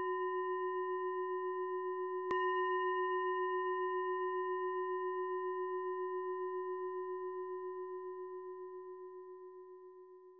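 A singing bowl ringing with a slow waver, struck again about two seconds in, then fading away slowly until it has almost died out by the end.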